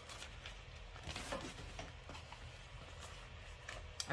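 Faint crinkling and rustling of a plastic hair package, with scattered light clicks, as a bundle of synthetic crochet braid hair is pulled out of it.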